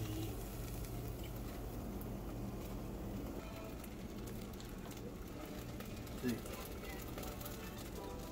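Meatballs in tomato sauce simmering in a saucepan on an electric stove: faint, steady crackling and small pops over a low hum.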